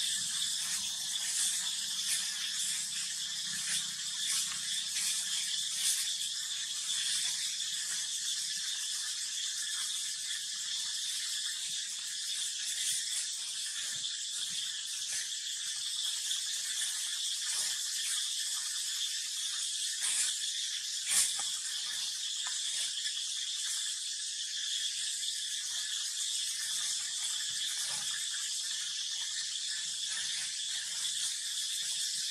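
A steady, high-pitched insect drone with a few faint clicks or rustles.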